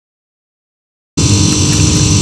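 Dead silence for about a second, then a steady mechanical hum cuts in abruptly and carries on.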